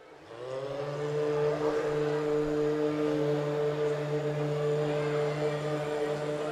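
Several men's voices holding one long, steady note together: the sustained drone of the backing chorus in sozkhwani, Shia lament chanting. It swells in over the first second.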